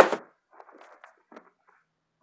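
Faint, scattered rustles and light knocks of plastic-wrapped tackle boxes and a fabric tackle bag being handled, after the last of a spoken word.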